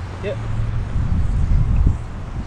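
Low, uneven rumble of wind buffeting the microphone, swelling to its loudest near the end, with a brief high voice near the start.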